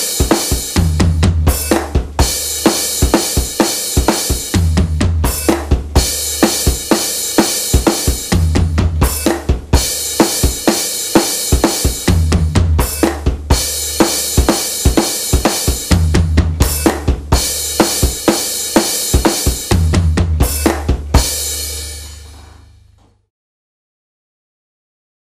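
Electronic drum kit played steadily in a rock beat: bass drum, snare, and floor tom hits that ring low, under a continuous wash of cymbals. The chorus beat has a changed bass drum pattern. The playing stops a few seconds before the end and the last cymbal fades away.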